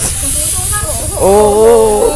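Aerosol party string cans spraying: a steady high hiss that starts suddenly, with voices calling out over it.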